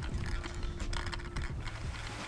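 Small irregular clicks and rustles of a full-face snorkel mask's strap being adjusted at the side of the head, over a low uneven rumble.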